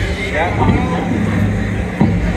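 A live psych-rock band's ambient intro: a steady low drone of sustained bass and synthesizer notes, with a few short gliding guitar or synth tones above it about half a second in.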